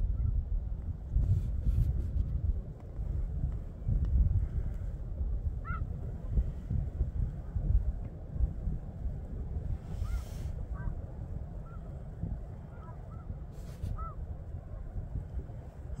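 Distant snow geese calling: a scattered handful of faint, short honks, more frequent in the second half, over a steady low rumble.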